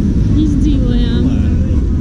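Steady low rumble of city street traffic, with a voice speaking briefly in the middle.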